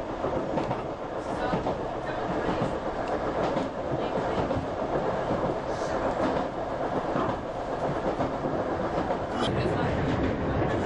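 Running noise heard inside an electric multiple-unit train travelling at speed: a steady rumble of wheels on the track with scattered clicks.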